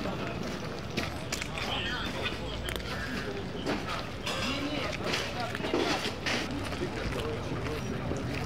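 Indistinct voices in the background, with irregular sharp crunches and clatters of debris underfoot as boots step over broken glass and rubble.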